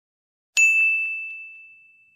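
A single high, bright ding sound effect about half a second in, ringing on and fading away over about a second and a half.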